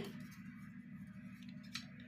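Faint scrape of a clear plastic set square sliding across drawing paper as it is repositioned, with a light click near the end.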